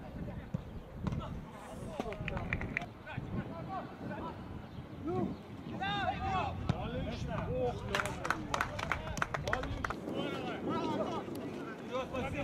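Footballers' shouts and calls across an open pitch during play, with a quick run of sharp knocks about two-thirds of the way through.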